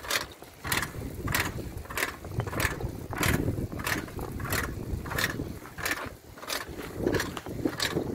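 Footsteps of a person walking at a steady pace, a short crisp step a little under twice a second, over low wind rumble on the microphone.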